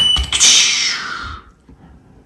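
Camera shutter firing for a flash exposure: a sharp click with a brief high tone at the start, followed by a hiss that fades out over about a second.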